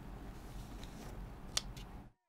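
Low, steady background rumble of a room, with a few faint clicks and one sharper click about one and a half seconds in.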